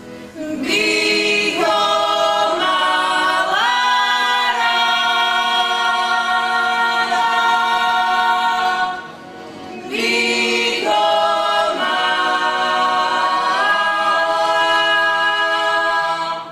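A Slovak folk group, women and a man together, singing a folk song in several voices. Two long phrases each end on a long held note, with a short break for breath about nine seconds in.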